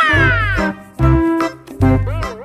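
Upbeat background music with a pulsing bass beat. At the start, a high sliding tone falls in pitch over about half a second, a cartoon-style sound effect laid over the music.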